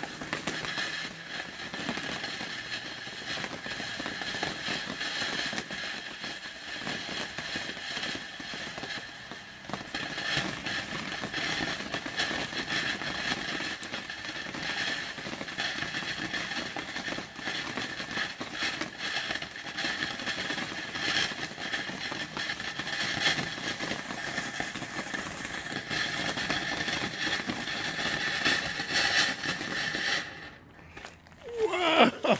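A TNT Global Lights tube fountain firework burning: a steady hissing spray of sparks, dotted with many small crackles.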